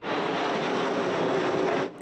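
Jet air tanker flying low: a steady rushing roar of its engines that cuts in and out abruptly.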